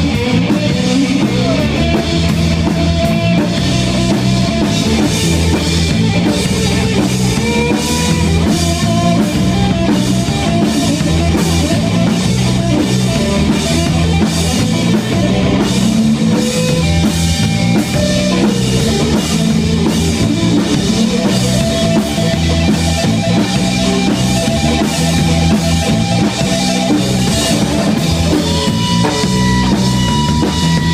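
Live rock band playing an instrumental passage: electric guitar over a Ludwig drum kit, the drums keeping a steady beat of repeated cymbal and drum strikes.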